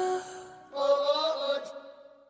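Closing seconds of a pop song: a held musical note fades out, then a last drawn-out vocal note comes in under a second later and dies away, ending the track.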